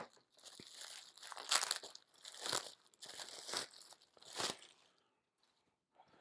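Packaging rustling and crinkling in a run of bursts as a folded tote bag is worked free of its glued-in cardboard insert. The bursts stop about five seconds in.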